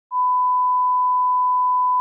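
Television test tone that goes with colour bars: a single steady high-pitched beep, starting just after the beginning and held at one pitch.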